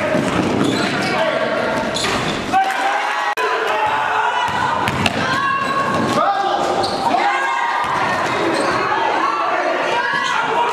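A basketball being bounced and players' voices echoing in a gym during a game, with a brief break a little over three seconds in.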